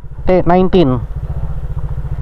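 Honda PCX 150 scooter's single-cylinder four-stroke engine idling at a standstill, a steady, rapid, even putter.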